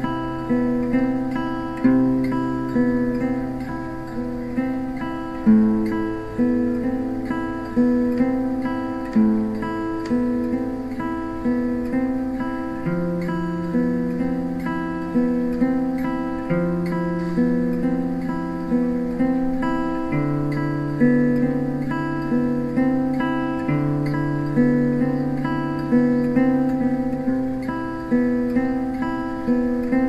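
Background music: an acoustic guitar picking chords, with plucked notes in a steady rhythm and the bass note changing every few seconds.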